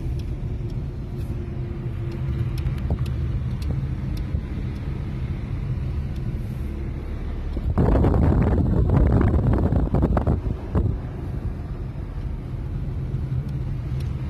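Car driving on a road, heard from inside the cabin: a steady low engine and road rumble, with a louder rushing stretch from about eight to eleven seconds in.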